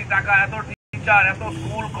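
A man speaking into a microphone. The sound cuts out completely for a moment a little under a second in.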